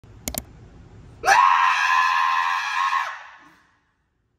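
A loud, high-pitched scream held steady for about two seconds, starting about a second in and dropping in pitch as it breaks off, preceded by two sharp clicks.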